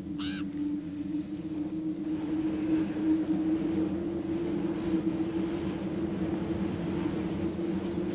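A steady low droning tone over a soft rumble, holding the same pitch throughout, with a short hiss just after the start.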